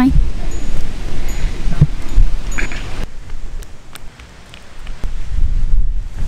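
Wind buffeting the microphone, a gusty low rumble with a rustling haze, easing off briefly about two-thirds of the way through before picking up again; faint voices come through now and then.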